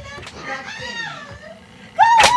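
High-pitched voices speaking in Japanese from a film soundtrack, their pitch bending up and down.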